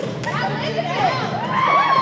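Crowd cheering and screaming, many high voices overlapping, growing louder towards the end.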